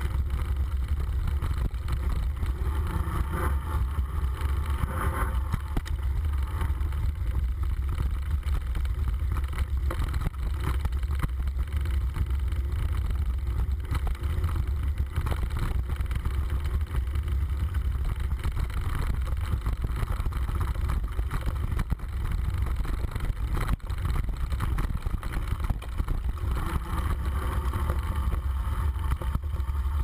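Steady low rumble of wind and ride vibration on a bike-mounted camera's microphone as a bicycle rolls over a rough dirt trail, with frequent small rattles and knocks from the bike over the bumps.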